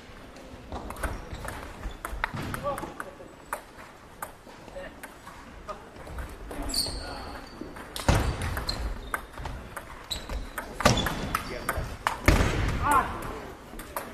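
Table tennis rallies: a plastic ball clicking off bats and the table in quick runs, echoing in a large gymnasium, with background voices of players at other tables. A few dull thuds stand out in the second half.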